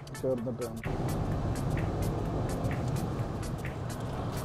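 Steady road and engine noise of a moving vehicle, heard from inside it, which rises suddenly about a second in. Short bits of a melody come before it, and a faint regular tick runs about twice a second.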